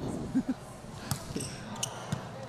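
A volleyball bounced a few times on the indoor court floor by the server as she readies her serve, giving short dull thumps over a low crowd murmur.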